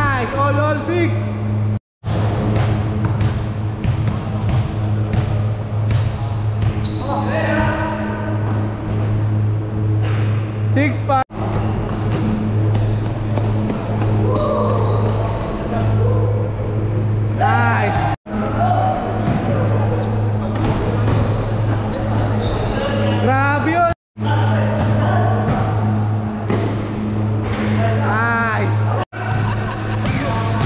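Indoor basketball game sounds: the ball bouncing on the court and sneakers squeaking in short quick squeals several times, with indistinct players' voices over a low steady hum. The sound cuts out completely for a moment four times.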